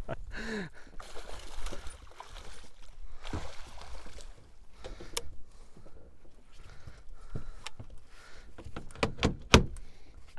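Scattered knocks, clicks and rattles as a landing net holding a netted musky is handled against a fishing boat's side and deck, over faint water and wind noise. The sharpest and loudest knock comes near the end.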